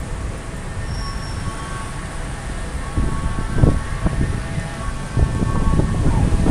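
A BTS Skytrain running on the elevated track alongside: a steady low rumble with a faint steady whine. About three seconds in, and again near the end, louder irregular low rumbling buffets come in.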